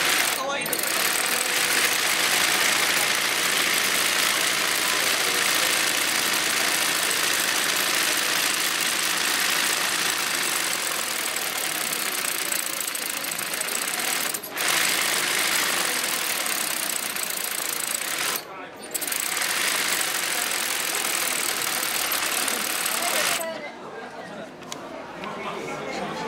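Industrial zigzag (yokofuri) sewing machine running fast and steadily while it stitches a satin-fill embroidery motif, the fabric guided by hand. It pauses briefly twice in the second half and stops near the end.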